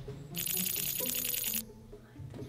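A short jingling, rattling sound effect over quiet background music: quick even strikes, about ten a second, with a high shimmer, starting just after the start and cutting off after about a second and a quarter.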